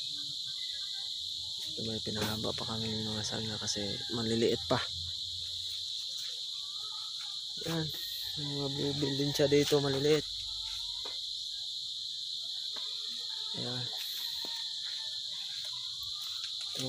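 Steady, high-pitched insect chorus droning without a break. A voice speaks briefly twice over it, loudest just past the middle.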